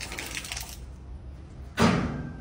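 A plastic-bottle water rocket, launched by foot pump, coming back down: a soft hiss in the first second, then one dull, loud thump near the end as it lands.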